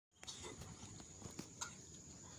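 Quiet open-air ambience on a lake: faint low background noise with a few soft knocks and a thin, steady high-pitched whine.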